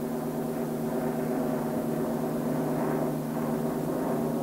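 A steady low drone made of several held tones, unchanging in pitch and level.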